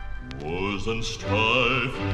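Record of a male gospel quartet: after a pause the voices slide up into sustained harmony notes with vibrato. This is a vinyl transfer, with a click near the start.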